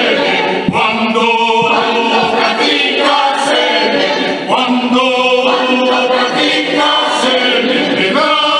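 Mixed choir of men's and women's voices singing a Spanish-language hymn in harmony, holding sustained chords, with new sung phrases entering about a second in and again after about four and a half seconds.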